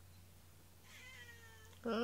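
Domestic cat meowing twice: a fainter, higher meow about a second in, then a louder, lower meow near the end.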